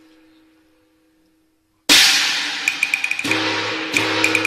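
Cantonese opera accompaniment: a held instrumental note fades almost to silence. About two seconds in, the percussion section comes in with a loud gong-and-cymbal crash that rings on, then a run of quick sharp clicking strokes and another crash near the end, over a sustained instrumental tone.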